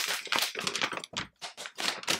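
Gift wrapping paper being torn and crinkled off a wrapped book: a quick, irregular run of crackles and rips.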